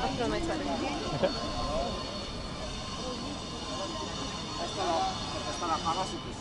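Busy pedestrian street ambience: passers-by talking as they walk past, at the start and again near the end, over a steady background hum of the city.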